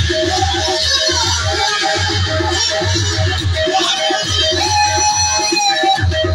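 Live instrumental music from a stage band: a quick, repeating melody of short notes over a steady low drum beat, with no singing.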